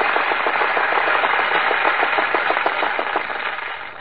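Audience applause: a dense, steady patter of many hands clapping on an old low-fidelity broadcast recording, dying down near the end.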